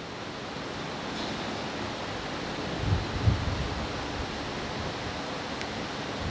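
A pause in speech filled with a steady, even background hiss, with two brief low thumps a little before the middle.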